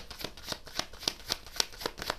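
A deck of tarot cards being shuffled by hand: an even run of quick card clicks, about seven a second.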